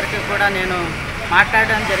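A woman speaking in Telugu in an interview, over a steady low mechanical hum.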